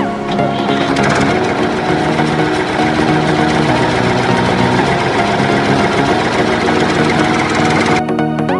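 A small toy tractor's running sound, a fast steady mechanical rattle like a little engine, over background music.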